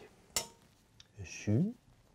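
A metal spoon clinks once against a stainless-steel saucepan while scooping mashed potato, followed by a fainter tick about a second in and a brief vocal sound.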